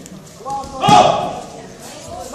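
A man's short shouted call, loudest about a second in, echoing in a large hall.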